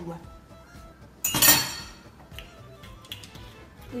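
A single short clatter of kitchenware about a second in, a metal spoon knocking against a glass mixing bowl, fading quickly. Faint background music underneath.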